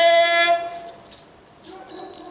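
A man's voice shouting a long held note that scoops up in pitch and holds for about half a second, then dies away; faint high ringing tones come in near the end.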